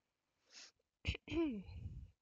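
A woman sneezes: a short breath in, then a sharp burst and a voiced 'choo' that falls in pitch.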